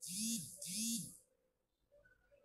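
Two identical short electronic sound effects, one right after the other, each about half a second long: a bright, high-pitched sound over a low tone that rises and then falls.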